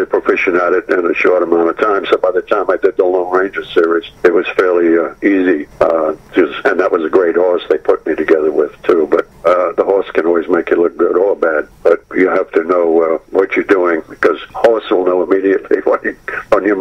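Only speech: a man talking without pause over a telephone line, his voice thin and cut off in the high end.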